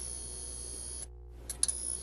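Faint hiss with a thin, steady high-pitched whine from an outro sound track. It drops out briefly about a second in, then a few faint clicks come before the hiss returns.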